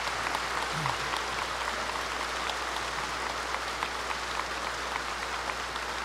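Large audience applauding steadily, a dense patter of many hands clapping without letting up.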